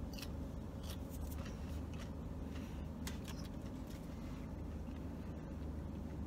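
A person chewing a french fry: faint, irregular crunching clicks over a steady low hum.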